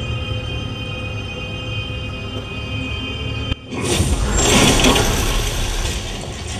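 Thriller film soundtrack: a low, tense drone of scary music. About three and a half seconds in, it breaks after a short dip into a loud explosion with a rush of flying debris, which then eases off.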